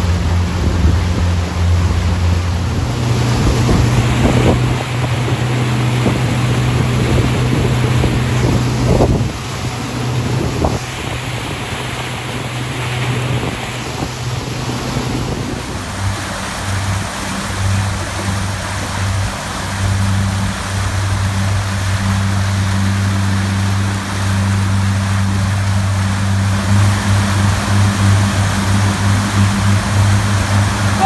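Boat's outboard motor running steadily under way, a low drone, under the rushing water of its wake.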